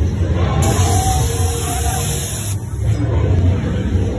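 Loud haunted-house background music with a heavy, steady low drone, with faint voices mixed in.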